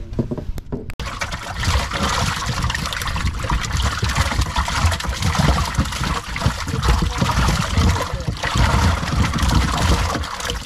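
Water spraying and churning in a boat's livewell crowded with live panfish, the fish splashing in it. It starts abruptly about a second in.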